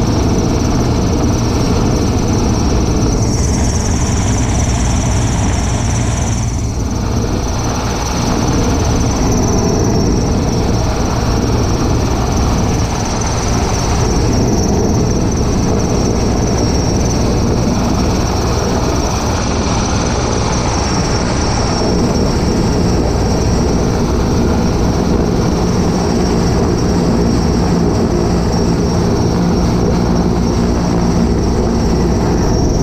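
Sikorsky S-64 Skycrane heavy-lift helicopter hovering close overhead: its rotor and turbines make a loud, steady din with a constant high whine running through it.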